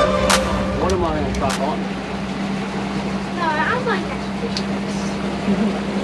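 Boat outboard motor running at low speed, a steady low hum under a noisy rush of wind and water, with faint voices in the background.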